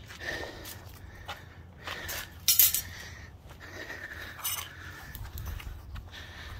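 Metal clinks and knocks as the hot clay crucible is handled with metal tongs on a concrete floor, with one louder clank about two and a half seconds in.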